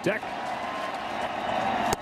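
Ballpark crowd cheering steadily, with one sharp pop near the end as a pitch hits the catcher's mitt for a strike.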